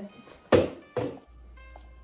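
Two loud thuds about half a second apart, as of someone storming off, followed after a cut by faint background music over a low hum.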